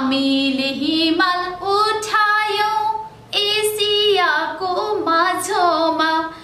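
A woman singing lines of a Nepali poem to a slow tune without accompaniment, holding long notes and gliding between them, with short breaths between phrases.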